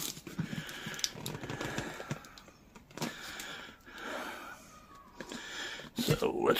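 A squeeze bottle of Slime tire sealant being pressed, forcing sealant and air through a plastic fill tube into a garden cart inner tube's valve stem. It gives faint, irregular wet squelches and hisses with a few small clicks.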